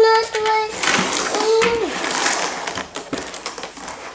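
A child's voice held on one pitch for under a second, then a shorter sliding vocal sound about a second and a half in, over light clicks and rattles of plastic game pieces being handled and pushed into a plastic toy barrel.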